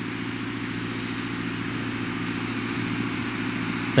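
A steady, low engine hum running at a constant speed, with a fine rapid pulse, over a continuous background of outdoor noise.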